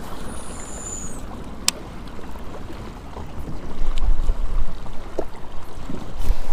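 Strong wind on the microphone over choppy lake water, with gusts growing louder about four seconds in. A single sharp click comes about two seconds in.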